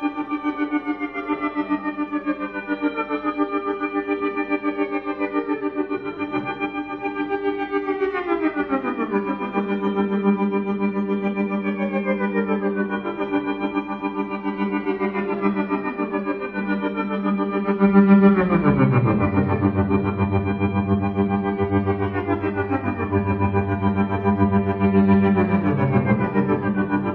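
Violin played through loop and effects pedals: many layered sustained bowed tones with repeated notes sliding downward in pitch. A deep low drone joins about two-thirds of the way in and the music grows slightly louder.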